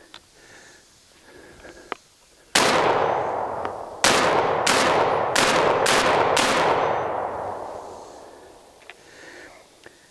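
Six shots from a Benelli M4 tactical 12-gauge semi-automatic shotgun: one, then five in quick succession about half a second apart, with a long echo fading away after them. Loaded with 3¼-dram Winchester AA shells, the gun cycles every round and empties its five-plus-one capacity without a malfunction.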